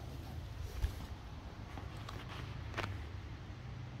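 Faint handling sounds of a hand working at the cover over a small engine's carburettor: a dull thump about a second in and a short click near three seconds in, over a low steady hum.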